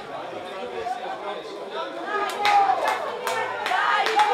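Several people's voices talking and calling over one another at a youth football pitch, with a run of sharp clicks from about halfway through.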